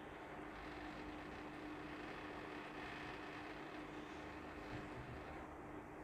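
Scissors cutting through printed fabric backed with ironed-on stiffening: a faint rasp of the blades through the cloth from about half a second in until near the end, over a steady low hum.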